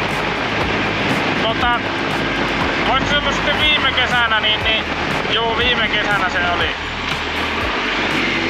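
Riding a Honda CB900 motorcycle at road speed: heavy wind noise on the microphone over the steady low hum of its inline-four engine, with a man talking through it in several short stretches.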